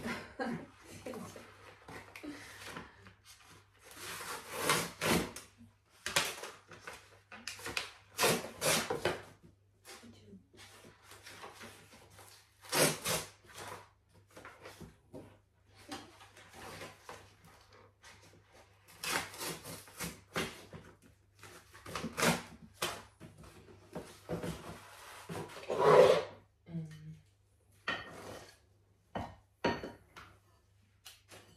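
Intermittent rustling, scraping and wooden knocks from paper and wood being handled at the firebox of a brick heating stove, with one louder knock near the end.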